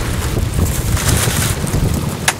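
Wind buffeting the camera's microphone: an uneven low rumble.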